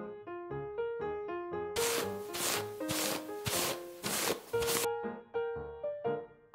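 Light piano background music with, from about two seconds in and for about three seconds, a series of scratchy rubbing strokes on paper, about two a second.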